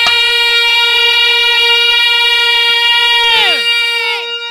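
Male Bhojpuri birha singer holding one long, steady high note, which drops away in a quick downward slide near the end.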